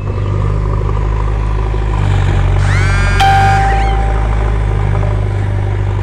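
JCB backhoe loader's diesel engine running steadily with a loud, deep rumble, with a brief rising whine near the middle.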